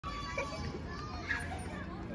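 Playground background: faint, distant children's voices calling and playing, over a steady low rumble.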